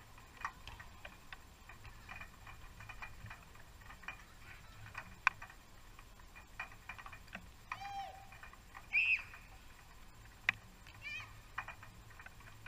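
Scattered sharp knocks of footballs being struck across the pitches, three of them louder, with a few brief shouts from players.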